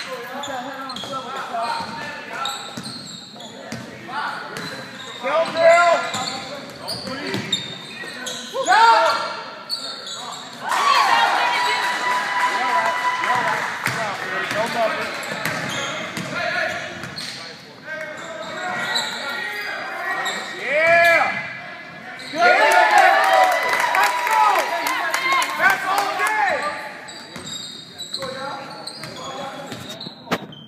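Live basketball game: a ball bouncing on the court among crowd voices and shouts, echoing in a large gym hall, with the noise swelling and easing several times.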